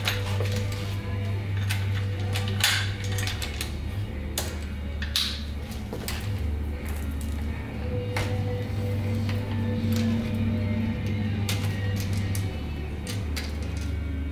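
Background music with a steady bass line, over scattered metal clicks and clanks as a Blix Vika+ folding e-bike's frame hinge and handlebar stem are unfolded and latched.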